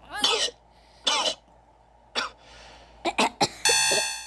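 A person coughing: single coughs about a second apart, then three quick ones. Near the end a steady buzzing tone with many overtones begins.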